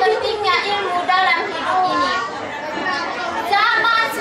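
Only speech: a teenage girl delivering a speech, talking continuously.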